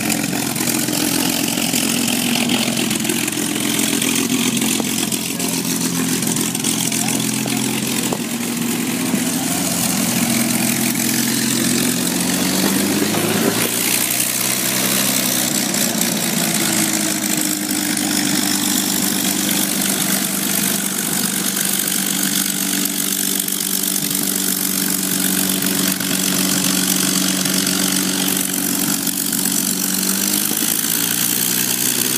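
Vintage WWII warplanes' piston engines running at ground idle, a steady loud drone. About 13 seconds in the engine note rises sharply in pitch, then settles back to idle.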